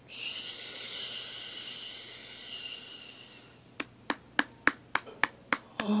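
A soft, steady hushing hiss like a long comforting 'shhh', lasting about three and a half seconds. Then comes a quick run of about eight sharp clicks, three or four a second.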